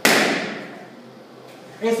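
A rubber balloon bursting with one sharp bang at the start, its echo in the room dying away over about half a second.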